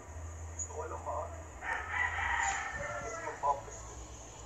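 A long, drawn-out animal call lasting over a second, starting a little before halfway, with snatches of faint speech around it.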